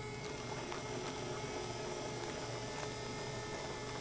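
A steady electric hum: a low drone with a higher steady tone above it.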